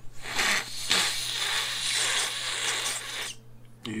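A person's harsh, rasping coughing fit, about three seconds long, that stops suddenly.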